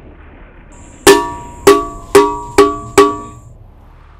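Five ringing metal percussion strikes, like a cowbell or small gong, coming a little faster each time, with a thin high steady tone over them: a dramatic sting in a film soundtrack.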